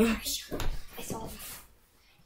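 A girl laughing, with a few light bumps and knocks as she moves away from the camera; it goes nearly quiet near the end.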